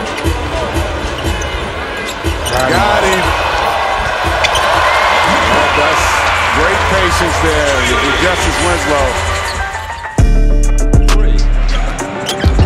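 Basketball dribbled on a hardwood arena court, repeated short bounces over crowd noise. About ten seconds in, loud background music with heavy bass cuts in abruptly.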